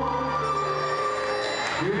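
Live orchestral accompaniment with string players holding sustained notes between a male singer's sung lines; the singing comes back in near the end.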